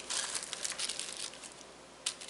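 Small clear plastic zip-lock bags of capacitors crinkling as they are handled and set down on a cutting mat. The rustling is busiest in the first second and then thins out.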